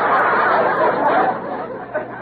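Studio audience laughing, many voices together, the laughter dying away about a second and a half in.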